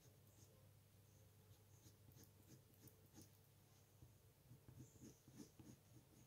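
Near silence with the faint scratching of a coloured pencil on paper in short, irregular strokes, over a low steady hum.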